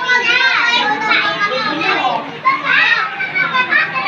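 Several young children's high-pitched voices chattering and calling out over one another without pause, the hubbub of a room full of small children.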